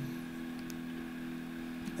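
A pause in speech filled by a steady electrical hum made of several even tones, with one faint tick near the middle.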